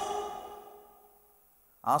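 A short pause in a man's speech through a microphone: the last word fades out with a breathy tail, about a second of silence follows, and speech starts again near the end.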